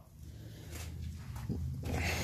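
Low rumble of handling noise on a handheld camera's microphone as it is carried while walking. A few faint knocks sound partway through, and the rumble and hiss grow louder toward the end.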